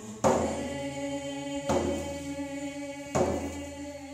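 Indigenous welcome song sung by a woman with sustained, chant-like tones, accompanied by a hand drum struck slowly, three beats about a second and a half apart, each beat ringing briefly in the hall.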